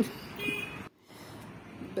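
Street traffic noise from passing cars, with a brief high-pitched beep about half a second in. The sound drops out abruptly for an instant about a second in and comes back quieter.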